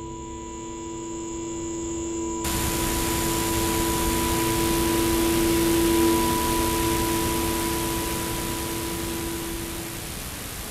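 A sustained droning chord that swells and then fades, joined suddenly about two and a half seconds in by a loud, even hiss of television static that carries on to the end.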